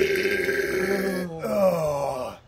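A man's loud, drawn-out vocal groan in two parts: the first held at one pitch for about a second, the second sliding down in pitch.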